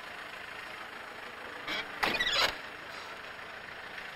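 Steady vehicle and street noise around a police jeep, with a short soft noise and then a louder half-second noise about two seconds in.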